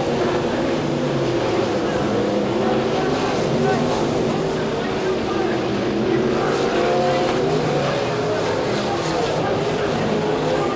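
Several winged sprintcar engines running flat out in a pack, their overlapping notes rising and falling in pitch as the cars go through the turns and down the straight.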